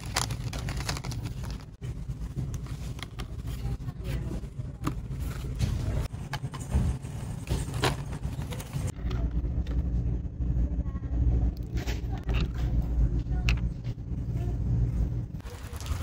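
Low steady rumble of store background noise, with scattered clicks and rustles from plastic-packaged items being handled on a shelf close to the phone's microphone.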